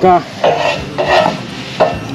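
Scraping rustle of a metal gazebo beam being shifted by hand on artificial turf, in two short bursts.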